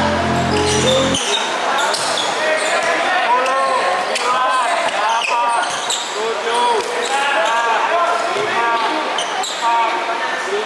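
Live game sound of basketball: many short, arching squeaks from sneakers on the court, with a ball bouncing at intervals. Background music cuts off about a second in.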